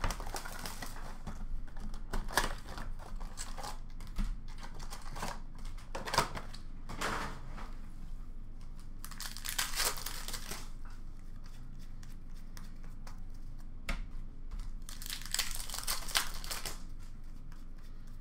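Hockey card blaster box and its card packs being torn open by hand: wrappers crinkling and tearing in irregular bursts, with longer stretches of crinkling around the middle and near the end.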